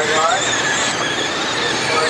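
Pack of 12T Mudboss dirt modified RC cars racing, their 12-turn brushed electric motors and gears giving a steady high-pitched whine over a hiss of noise.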